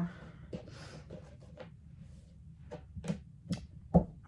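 A run of light, irregular clicks and taps from objects being handled on a desk, ending in one sharper knock.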